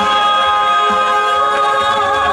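A woman singing a long, steady held note into a microphone, with the accompaniment of a Korean pop song underneath.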